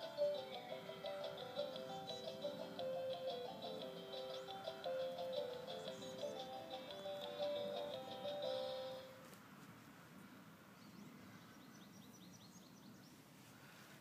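Electronic tune from a Fisher-Price ride-on toy car: a simple melody of short, stepped beeping notes that stops about two-thirds of the way through.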